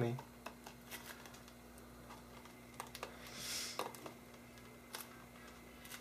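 Fingernails picking and scratching at the tight plastic shrink-wrap on a CD case: faint scattered clicks, with a brief crinkling rasp a little past halfway, over a faint steady hum.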